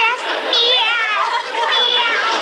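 Studio audience laughing, with a woman's high-pitched laughter wavering over it near the start.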